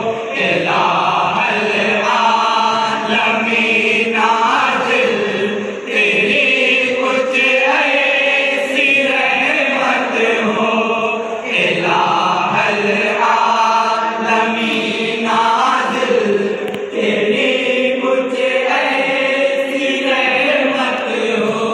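A chorus of men singing an Islamic devotional song together without instruments, amplified through a microphone. The song moves in long phrases, with short breaks for breath about every five to six seconds.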